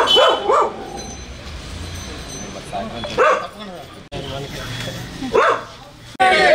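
A dog barking in short single barks: two in quick succession at the start, one about three seconds in and one near the end, over a low murmur of voices.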